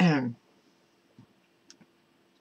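A woman's short wordless vocal sound, falling in pitch, right at the start, followed by a few faint clicks.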